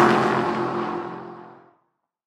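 Logo sound effect of a car engine sweeping past with a whoosh. It is loudest at the start, then drops in pitch and fades out near the end.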